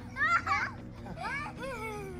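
Young children's excited, high-pitched voices squealing and laughing as they play.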